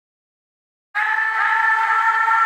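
Silence for about the first second, then a sustained electronic chord of several steady held notes comes in: the opening of a hip-hop beat.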